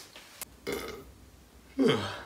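A young man's short, loud burp near the end, its pitch falling, after a brief quiet spoken word.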